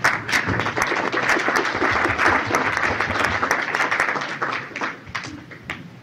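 Audience applauding, a dense patter of many hands that dies away after about five seconds, heard on an old mono cassette recording.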